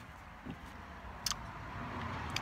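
Low steady background rumble that swells slightly toward the end, with one sharp click a little over a second in.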